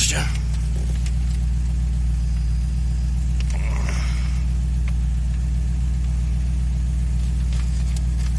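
Steady low mechanical hum inside a car cabin, with a brief rustle of a paper leaflet being handled about four seconds in.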